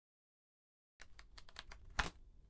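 Dead silence for about a second, then a quick run of small clicks and taps, about eight in a second, ending in a louder click: a cigarette lighter being handled against a tabletop.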